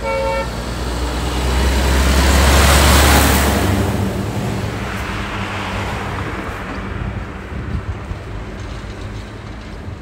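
Dump truck honking its horn once, briefly, then driving past close by, its engine and tyres loudest about three seconds in and fading away as it goes.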